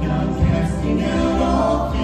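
A vocal trio of two women and a man singing together in harmony into microphones, holding sustained notes.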